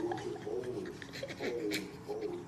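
Newborn baby fussing: a few short, wavering whimpers and grunts.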